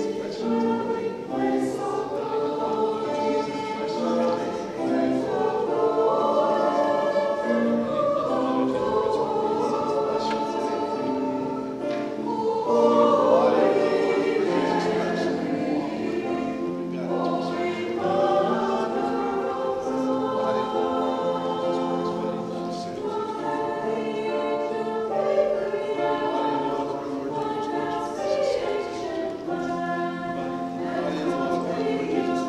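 A choir singing a hymn in long held notes.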